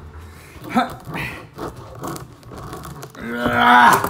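A knife works into a crusty bread roll to pry it open, with short irregular scraping noises. Near the end a man's voice lets out a loud held sound at a steady pitch, the loudest thing heard.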